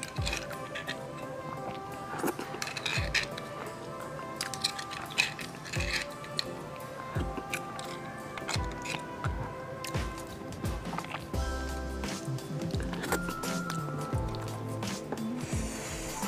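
Background music with held tones. Over it come short clicks and dull knocks from a metal spoon scooping marrow out of a cross-cut marrow bone.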